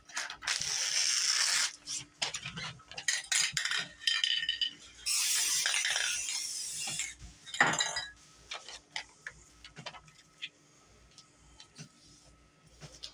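Aerosol spray paint can hissing in two bursts of one to two seconds, the second near the middle, with scattered clicks and light clinks of handling between.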